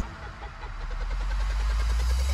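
A low rumble that swells steadily louder, with a faint rapid flutter over it: a cinematic build-up in the background score.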